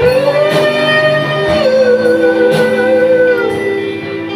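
Live praise-and-worship band music with electric guitar, carrying a long held melody note that slides down a little about a second and a half in.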